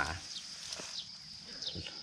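Quiet outdoor background: a steady high thin drone with a few faint, short falling chirps, after a spoken word that ends at the very start.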